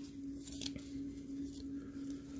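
Faint handling of a small piece of cardboard and a metal pin by fingers, with a small tick about three-quarters of a second in, over a steady low hum.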